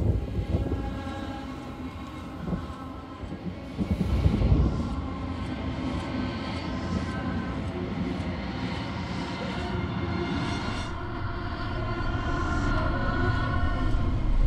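Low rumbling drone with held tones layered over it: a swell about four seconds in, then a slow rise near the end. It sounds like the film's ambient score or sound design under a montage.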